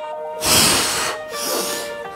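A man's heavy breathing, two long breaths, the first about half a second in and the second just after a second, over steady background music.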